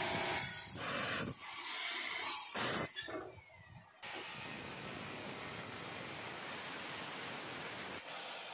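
Bosch abrasive cut-off saw cutting through steel tubing: a steady grinding hiss with a high motor whine that falls in pitch as the wheel bites. It drops out for about a second around three seconds in, then comes back abruptly and runs steadily.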